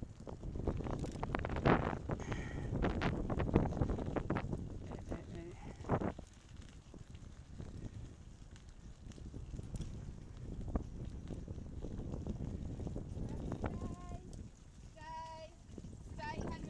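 Bicycle rattling and knocking over a rough path, with wind noise on the microphone; the rattling is busiest in the first few seconds, then settles to a quieter steady rumble. Near the end come a few short, wavering high-pitched calls.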